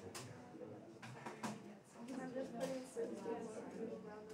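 Indistinct chatter of several students talking among themselves in pairs, with a couple of light clicks.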